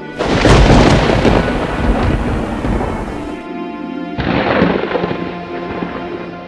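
Thunder sound effect: a loud crash just after the start that rumbles on for about three seconds, then a second crash about four seconds in, over eerie background music.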